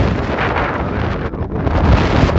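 Wind blowing hard across the camera microphone: a loud, steady rumbling buffet with no other sound standing out.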